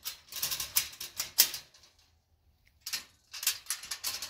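Metal clicks and rattles of a heavy-duty steel dog crate's slide-bolt door latch being worked and the grid door moving. There is a quick run of clicks, a pause of about a second, then a short second run.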